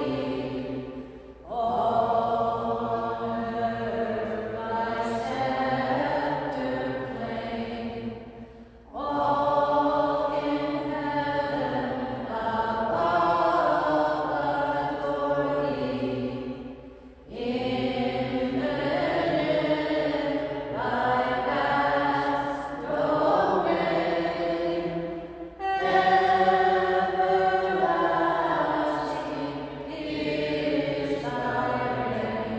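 Voices singing a hymn at the end of Mass, in long sustained phrases of about eight seconds with short breaks between them.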